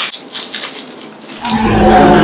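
Plastic candy wrappers crinkling as small candies are unwrapped. About a second and a half in, a person starts a loud, drawn-out hummed vocal sound, like an "mmm" while tasting.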